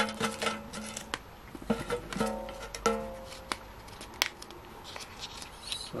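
Polymer banknotes rustling and crinkling as they are handled and rolled up by hand, with many sharp clicks. Three held musical notes, each under a second long, sound in the first half.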